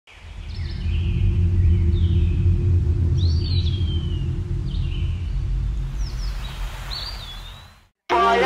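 Birds calling over a steady low rumble: several short chirps and a few whistles that rise and then fall. It fades in at the start and fades out near the end.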